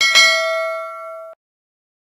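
Notification-bell chime sound effect, a bright bell ding struck twice in quick succession. It rings for just over a second and then cuts off suddenly.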